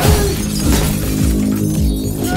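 A glass display case shattering in a loud crash at the start, the breaking glass fading out over about a second. Underneath are trailer music's deep falling bass hits, about one every 0.6 seconds.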